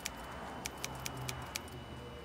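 Light, sharp clicking and clinking of small hard objects, about seven clicks spread over two seconds, over low background noise and a faint steady high whine.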